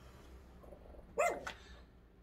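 A dog barking once, a short bark a little over a second in, against quiet background.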